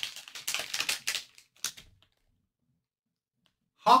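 A blind-bag wrapper being handled and crinkled: a quick run of crackles and clicks for about two seconds, then silence.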